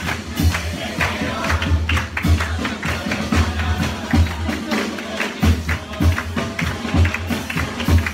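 Live murga percussion: a bass drum (bombo) beating about twice a second under crashing hand cymbals (platillos) in a steady carnival rhythm. The drum drops out briefly about five seconds in.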